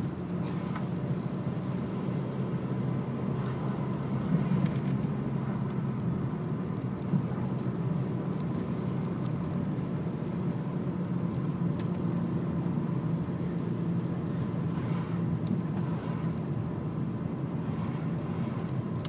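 Steady engine and tyre noise of a car being driven, heard from inside the cabin as a low, even hum.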